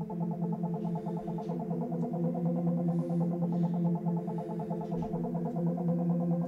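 Yamaha MO6 synthesizer with a key held down, sounding one sustained synth tone at a steady pitch and level, with no attack or decay over the six seconds.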